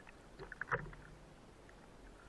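Small splashes and lapping of calm sea water at the surface around a floating spearfisher, with a short cluster of splashes just under a second in.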